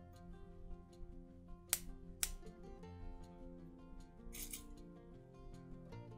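Soft background music, over which pliers click sharply twice, about half a second apart near two seconds in, and give a brief metallic rasp a little after four seconds: jaws working and closing aluminium jump rings.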